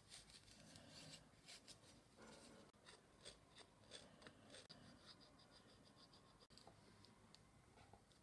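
Near silence with faint handling sounds: light clicks, taps and rubs of a metal caliper and an ebony block being handled on a wooden workbench, and a quick run of about ten tiny ticks in the middle.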